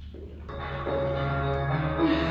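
Background music that comes in about half a second in, made of many sustained, chime-like tones over a steady low hum.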